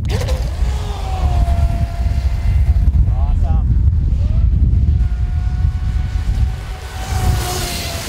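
AquaCraft Revolt 30 RC mono-hull boat's water-cooled brushless motor and metal propeller running at speed on a 4S LiPo: a steady high whine that rises as the boat takes off in the first second, over a heavy low rumble. Near the end comes a loud rush of spray as the boat turns hard close to the bank.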